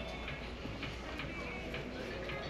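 Retail store background: faint music and distant shoppers' voices, with a few light ticks.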